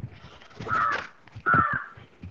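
A bird calling twice: two loud calls a little under a second apart.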